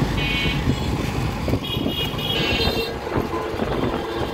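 Street traffic noise heard from a moving rickshaw, with high-pitched horn toots: one short toot near the start and a longer, broken one about two seconds in.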